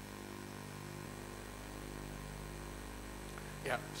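Steady electrical mains hum, a low buzz made of several constant tones, on a sound-reinforced recording. A man says a short "Yeah" near the end.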